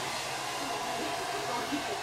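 A hair dryer running with a steady, even noise.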